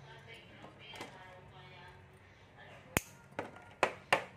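A few sharp clicks and taps of small objects being handled on a hard desktop: the loudest about three seconds in, followed by two lighter ones.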